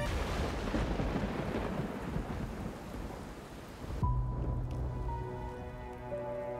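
Film-soundtrack thunderstorm: a thunderclap with heavy rain starts abruptly and fades over about four seconds. About four seconds in it cuts to music with steady held tones.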